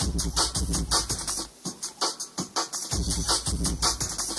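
Jungle dance music from a DJ set: fast, chopped breakbeat drums over deep bass. The bass drops out for about a second in the middle, then returns.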